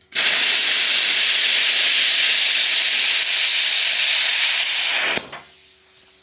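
ArcCaptain Cut 55 ProLux plasma cutter cutting 10-gauge steel at 40 amps: a loud, steady hiss of the plasma arc that starts abruptly and cuts off about five seconds in. A much quieter hiss of air follows, as the torch's post-flow air keeps running after the arc goes out.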